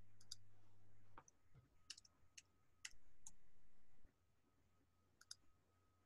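Near silence on a video-call line: a low hum that cuts off about a second in, and a handful of small, sharp clicks spread through, several in quick pairs.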